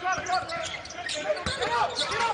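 A basketball dribbled on a hardwood arena court during live play, with a sharp bounce about one and a half seconds in, over arena background noise.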